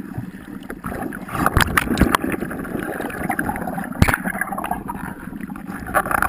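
Water sloshing and gurgling around an underwater camera held just below the surface, with a few sharp knocks, the loudest about four seconds in.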